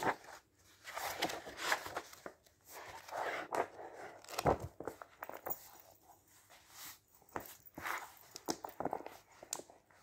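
Pages of thick magazines being turned and handled: irregular papery rustles and swishes, with a dull thump about halfway through.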